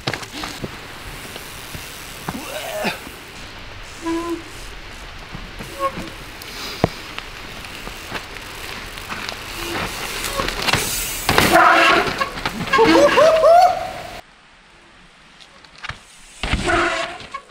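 Mountain bike tyres rolling and skidding slowly down a steep, wet dirt-and-rock chute, over a steady hiss of rain. Near the end come excited shouts, and then the sound drops away suddenly.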